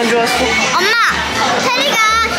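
High-pitched children's voices sliding up and down, with no clear words, over background music with a regular low bass beat.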